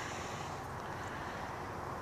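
Steady, even outdoor background noise with no distinct sounds in it, a pause between spoken sentences.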